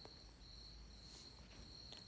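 Near silence: faint room tone under a thin, steady, high-pitched insect trill.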